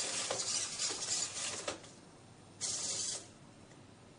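The servo motors of a PALRO humanoid robot whir with a hissy, clicking buzz as it finishes walking and settles into place. The sound stops a little under two seconds in, and a short burst of the same sound comes at about three seconds.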